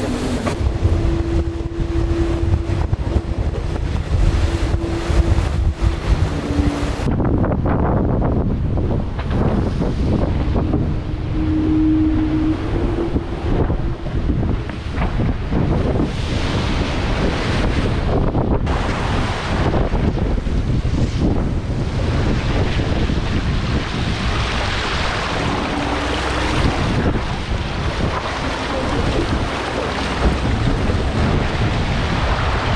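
Wind buffeting the microphone and sea water rushing and splashing past the hull of an offshore racing trimaran under way in rough seas. During the first several seconds a thin steady tone sounds through the noise, and it returns briefly later.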